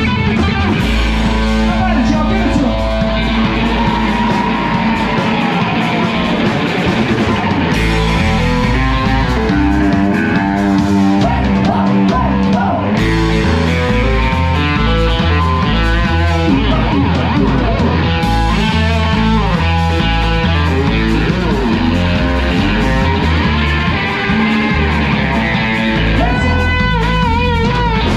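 Live honky-tonk band: a Telecaster-style electric guitar playing a lead with sliding string bends over a stepping upright bass line and drums.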